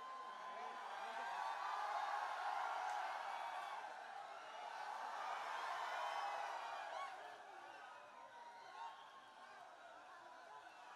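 A large crowd of fans cheering and shouting, many voices overlapping. It swells over the first few seconds and dies down after about seven seconds.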